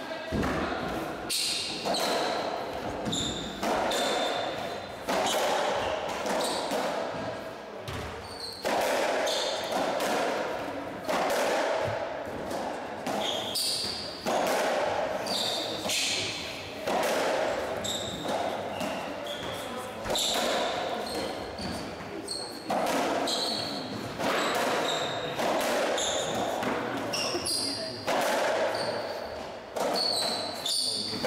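Racketball rally on a squash court: the ball is struck by the rackets and hits the walls in sharp, echoing cracks about every second or so. Short high squeaks from shoes on the wooden floor come between the shots.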